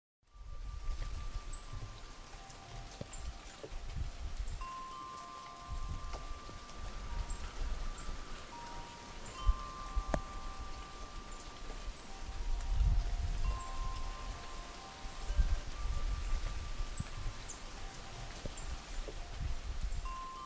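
Wind chimes ringing in scattered, overlapping notes of several pitches over falling rain, with irregular low rumbles underneath.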